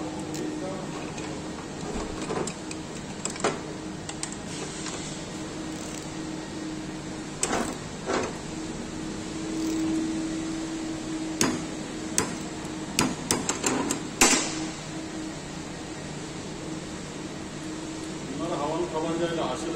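Hand tools on metal as the clutch and variator nuts of a Honda PCX scooter are tightened with a torque wrench: scattered sharp clicks and clanks, with a quick run of clicks a little past two-thirds of the way through. A steady low hum runs underneath.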